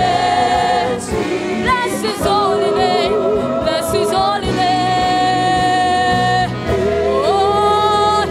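Live gospel worship song: women singing into microphones over a band, with several long held notes.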